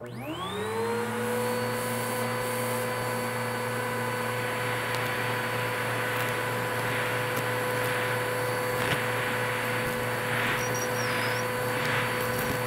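Bissell vacuum cleaner switched on, its motor whine rising in pitch over about a second, then running steadily. The hose nozzle sucks up a pile of dirt and small debris, with crunch of debris rattling up the hose in the second half.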